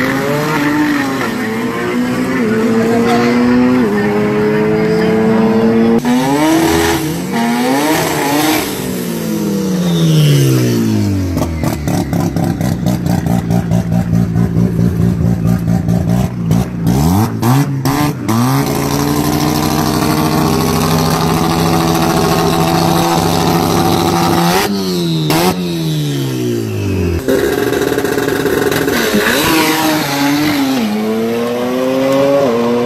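Modified drag-race cars revving hard and launching down the strip. The engine pitch climbs through each gear and drops at every shift. For several seconds in the middle the engine stutters rapidly and evenly.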